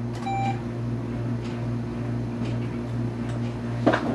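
Steady electrical hum from the pulmonary function testing equipment, with one short electronic beep about a third of a second in and a single knock just before the end.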